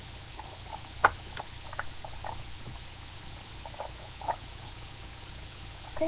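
Handling noise from a webcam being moved and adjusted: scattered light clicks and knocks, one sharper about a second in, over a steady microphone hiss.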